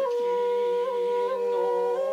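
Shakuhachi holding one long steady note with slight ornamental flutters about midway, over a man's low, slowly wavering sung voice chanting waka.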